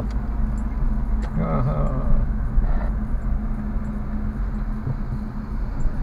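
Steady engine and road hum inside a moving car's cabin during slow city driving, with a short muffled voice about a second and a half in and a few faint light ticks.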